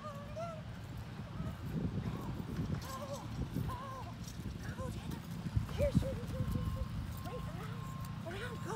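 A handler's short, repeated vocal calls to a dog over running footfalls on grass, with a couple of heavier thuds a little past the middle.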